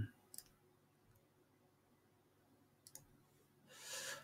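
Near silence with two faint computer mouse clicks, the first shortly after the start and the second about three seconds in.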